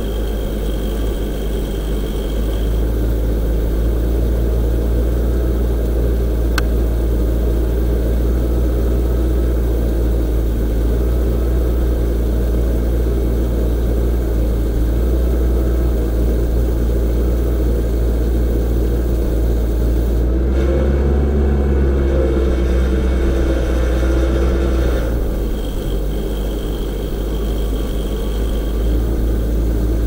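Genie S-40 boom lift's engine running steadily while the boom raises the basket. About two-thirds of the way through, the note changes for about five seconds, then returns to the steady running.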